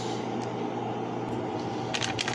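Steady low hum and hiss of kitchen background noise, with one light click just before the end.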